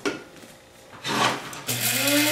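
A brief scraping rub, then about one and a half seconds in an electric coffee grinder's motor starts and spins up into a steady whirr as it grinds coffee beans.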